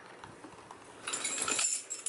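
A bunch of car keys jangling and clinking as they are lifted out of a tote bag, starting about halfway through with a run of small, irregular metallic clinks after a quiet rustle of handling.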